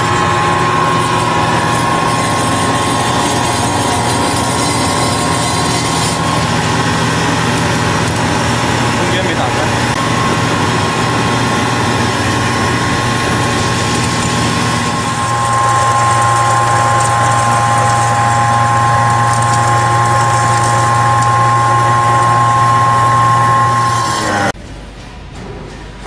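Cocoa powder grinding mill running steadily with a high whine over a low hum as cocoa cake is fed in and ground. About fifteen seconds in its sound changes and grows slightly louder.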